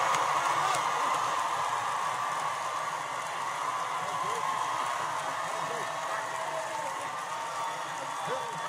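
A large crowd cheering and applauding, with scattered shouts and whoops, slowly dying down.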